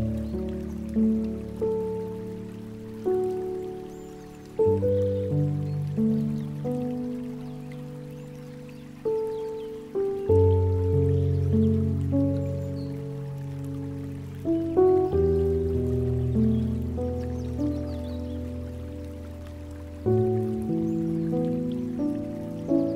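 Slow, calm piano music: soft notes that ring and fade, with a new low bass chord about every five seconds. A faint trickle of water runs underneath.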